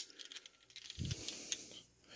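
Faint handling sounds of a steel screwdriver bit being worked in and out of the shaft of a multi-bit screwdriver: a few light clicks, then about a second in a soft scraping hiss of metal sliding on metal lasting under a second.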